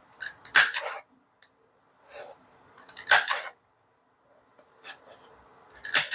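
Handheld plastic lever circle punch cutting circles out of a thin glitter EVA foam sheet: three sharp snaps about two and a half seconds apart, with softer rustling and scraping of the foam sheet between them.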